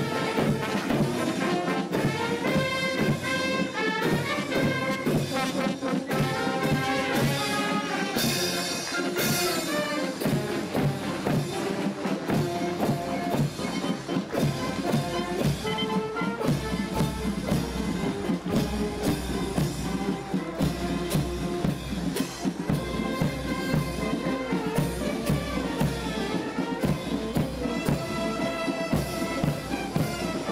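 A combined military marching band of Air Force, Army and Navy bandsmen playing a march on trumpets, trombones and tubas, with drums. The low end grows fuller about halfway through.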